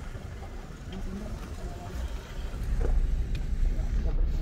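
Low, steady motor-vehicle rumble that grows louder about halfway through, as from a car moving on a rough track.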